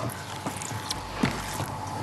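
Silicone spatula scraping creamed butter, sugar and egg mixture down the sides of a glass mixing bowl, with a few light knocks against the glass.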